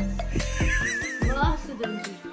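A horse whinny, one high wavering call of about a second, about half a second in, over background music.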